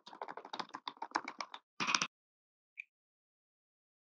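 Spoon stirring water in a clear plastic cup, a rapid run of light taps against the cup wall for about a second and a half, then a louder clatter around two seconds in and a single faint tick after it.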